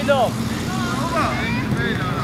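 High-pitched shouts and calls of young footballers on the pitch, one falling call at the start and fainter ones after, over a steady low rumble.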